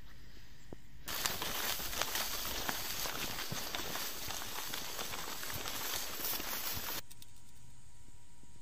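Footsteps and rustling of people hurrying through brush and grass, a dense crackle of small snaps. It starts abruptly about a second in and cuts off about a second before the end, with only faint background hiss either side.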